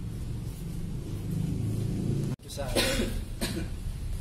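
Low steady hum of a quiet classroom. After an abrupt cut a little past halfway, a person coughs twice in quick succession.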